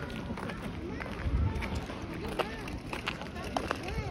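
Voices of several people talking around the microphone outdoors, in short scattered snatches, over a steady background hum of outdoor noise. About a second in there is a brief low rumble.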